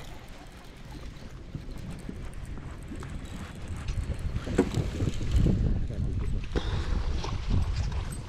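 Wind rumbling on the microphone, with scattered knocks, getting louder about halfway through.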